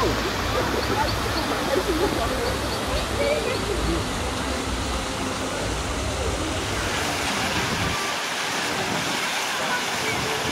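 Steady rush of a small waterfall into a pond, with indistinct chatter of passers-by in the first few seconds. About eight seconds in, the low rumble drops away and the water sound continues.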